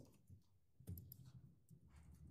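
Near silence: room tone with a low hum and a few faint clicks, one at the start and another about a second in.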